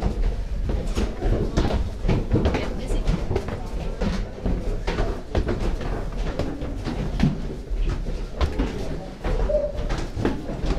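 Indistinct voices of other people, with frequent footsteps and knocks in an echoing stone room.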